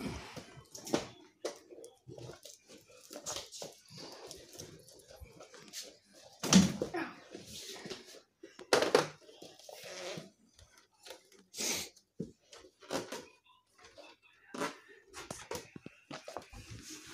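Irregular rustling, bumps and knocks as plush toys, toy cars and balloons are handled and set down on a wooden floor, the loudest bumps about six and a half and nine seconds in.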